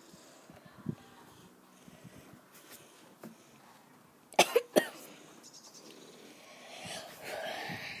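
A girl coughing on a mouthful of dry icing sugar: three sharp coughs in quick succession about halfway through, then a longer, breathier cough near the end.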